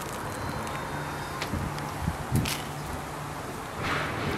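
Steady background hiss of rain with a low hum, and a few light clicks and knocks from eating out of a cast iron pan.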